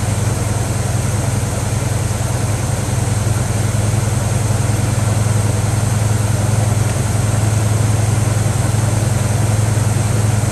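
1971 Buick Skylark's 350 V8 idling steadily, a low, even hum with no changes in speed.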